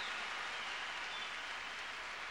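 A steady, even hiss-like noise, with no clear music or voice.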